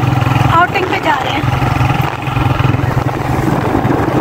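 Motorcycle engine running steadily under way, with road noise. A brief vocal sound from a person comes in about a second in.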